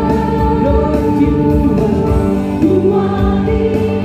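Live worship band playing a contemporary worship song: steady sustained keyboard chords under a group of voices singing the melody.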